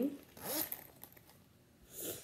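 Zipper and nylon fabric of a Kipling Kiko crossbody bag being handled: a short zip-like rustle about half a second in and another brief rustle near the end.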